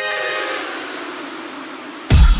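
Electronic music in a breakdown: the held synth notes have died away and a wash of noise slowly fades out, leaving the track thin and quiet just before the beat comes back in.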